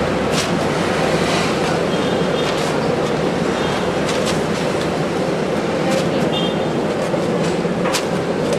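Steady, loud background din with no break, over which plastic tongs click lightly now and then as bread is lifted from powdered sugar and dropped into a paper bag.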